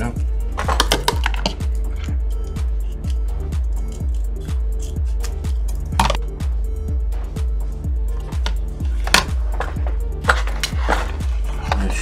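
Background music with a steady, quick low beat, over which a few sharp clicks and rustles come from handling materials while gluing a puppet repair.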